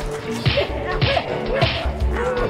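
A man being beaten in a film fight, heard as three sharp whip-like lashes about half a second apart, with background music under them.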